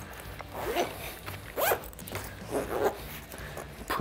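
Zipper on a fabric waist pack being drawn in short pulls, about four, as the zipper pulls are moved to the side the pack will be torn open from.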